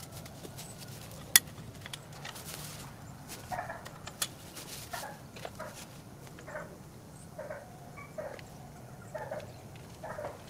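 Short animal calls, repeated every second or so from about three and a half seconds in, with a sharp click about a second in.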